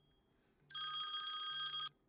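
Phone ringing for an incoming call: one steady ring of about a second, starting about half a second in.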